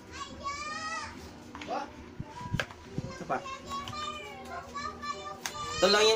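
Children's high-pitched voices chattering and calling, with a few sharp clicks from the phone box and its plastic-wrapped accessories being handled.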